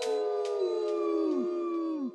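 Canine howling: several long, overlapping howls, each holding its pitch and then dropping away at the end, dying out one after another with an echoing tail.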